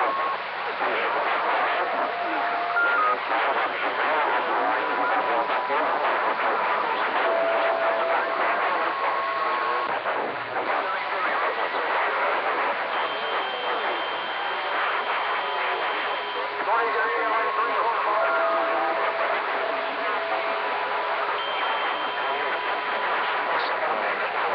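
CB radio receiver on channel 40 lower sideband: steady static with garbled, unintelligible sideband voices and whistling carrier tones that come and go at several pitches. The channel is crowded with other stations, and the station being answered is hard to pull in through them.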